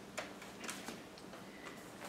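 Faint, irregularly spaced light clicks and flicks of thin Bible pages being leafed through to find a passage.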